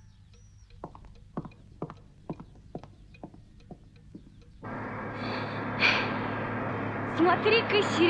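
A quiet room with steady ticking, about two ticks a second, like a pendulum wall clock. About halfway through this gives way to a truck's engine running steadily, heard inside the cab, and near the end a woman starts singing over it.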